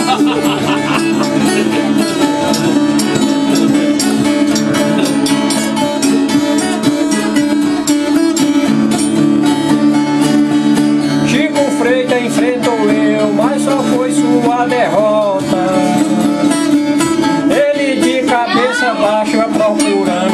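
A ten-string viola and a six-string acoustic guitar strummed together in a steady baião rhythm: the instrumental break between sung verses of a repente cantoria. About halfway through, a voice starts over the strumming.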